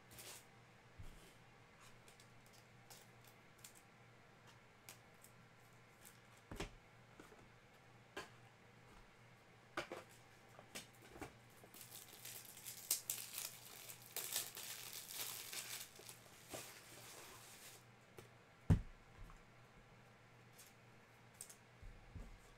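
Trading-card packaging being torn open and crinkled, with a dense stretch of crackling from about halfway in for several seconds and scattered light clicks and taps around it. A single sharp knock comes shortly after the crinkling stops.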